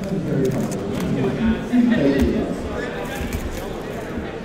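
Indistinct speech with hall background noise, and a few light clicks.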